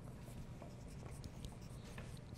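Pencils scratching on paper as several children write, faint, with scattered small ticks over a low steady room hum.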